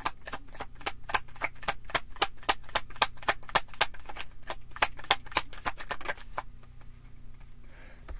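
Tarot deck being shuffled by hand: a quick run of card snaps, several a second, that stops about six seconds in.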